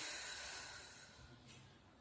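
A woman's long, slow exhale, tapering off gradually over the two seconds.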